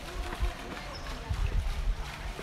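Faint, indistinct voices over irregular low rumbling noise.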